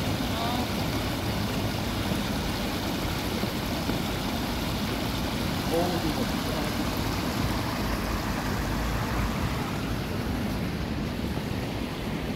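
Shallow stream water rushing steadily over rocks, with faint voices of people talking nearby.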